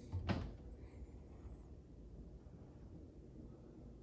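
Wooden kitchen cabinet door being handled: a single short knock about a quarter of a second in, then only faint room tone.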